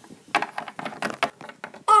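Small plastic toy figure tapped and clicked against a hard tabletop as a hand walks it along: a quick, irregular run of light taps.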